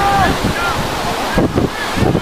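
Wind buffeting the camera microphone, a loud uneven low rumble, with faint distant shouts from the field.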